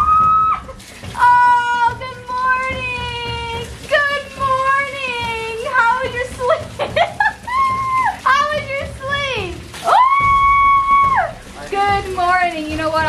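High-pitched screams and yells, several long drawn-out shrieks that slide down at the end, one held for over a second near the end, over the spray of a shower running into a bathtub.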